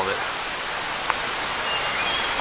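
Steady rushing of running water from a nearby stream, with a single faint click about a second in.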